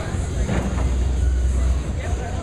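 Candlepin bowling ball rolling down a wooden lane, a steady low rumble, with voices in the background.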